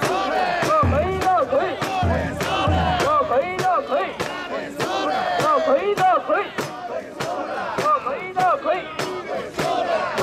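Mikoshi bearers shouting a rhythmic carrying chant in unison, many voices together, with sharp clacks about twice a second keeping time. There are a few low thuds about a second in and again between two and three seconds.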